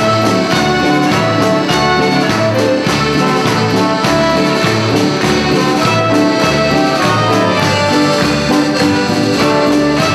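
A band playing an instrumental piece, with horns and accordion carrying the tune over a steady bass line and beat.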